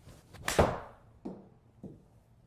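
A Ping i210 7-iron swung and striking a golf ball off a hitting mat into a simulator screen: a brief whoosh, then one sharp, loud crack of impact about half a second in. Two softer knocks follow, about half a second apart.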